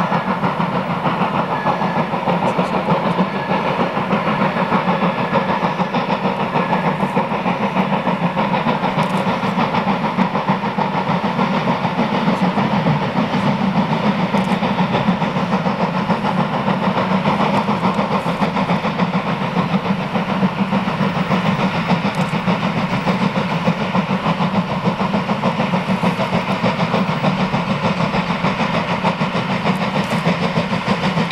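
BR 50 two-cylinder 2-10-0 steam locomotive working steadily with its train, a loud, even, unbroken running sound with no pauses.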